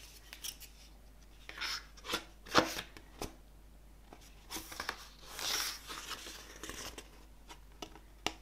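Glossy photobook pages and card cover handled and turned: a series of crisp paper rustles and flaps, the loudest a little over two and a half seconds in, and a longer rustle around five to six seconds.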